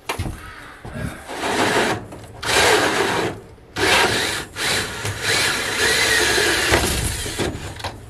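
Cordless drill boring a large hole down through a wooden wall plate into the plywood floor, running in several bursts of a second or more with short pauses between, and stopping near the end.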